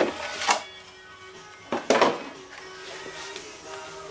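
Thin plastic RC car body crackling and popping as it is flexed and pulled off a tight fit on the chassis: sharp cracks at the start, about half a second in and about two seconds in, over background music.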